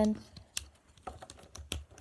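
A few scattered, sharp plastic clicks from a Transformers Jazz action figure's arm and joint being handled.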